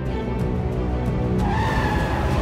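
Drama background music, and about one and a half seconds in a car speeds off on a wet road with a rising high whine.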